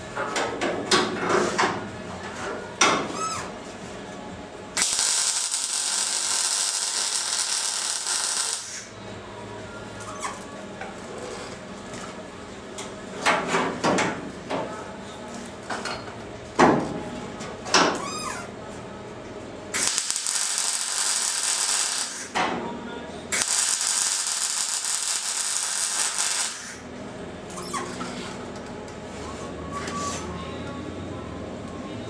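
MIG welder spot welding steel car body panels: three runs of steady welding hiss, each a few seconds long, about 5, 20 and 23 seconds in. Between the runs come short sharp knocks and squeaks of metal being handled.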